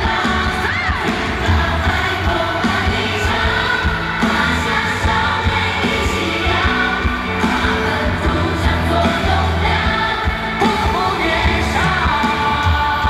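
Live pop band music with a male lead vocal and a heavy, steady bass, the voice sliding in pitch about a second in and again near the end.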